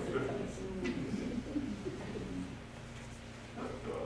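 Low, indistinct voices and soft chuckling in the room after a funny story, trailing off about halfway through.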